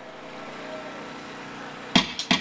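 Steady background noise of idling vehicle engines and street traffic, with a sudden loud sound cutting in right at the end.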